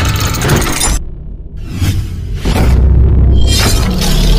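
Cinematic intro music with a heavy deep bass and crash-like sound effects. The loud opening cuts off sharply about a second in, then a few sharp hits lead back up to full volume.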